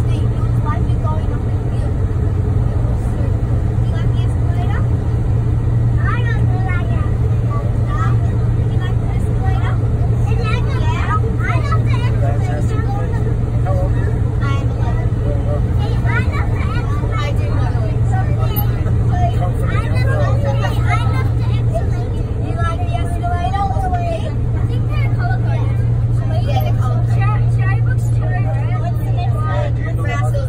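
Sydney Metro train running at speed through a tunnel, heard from inside at the front: a steady, loud, low rumble of wheels on rail and the traction motors that holds an even level.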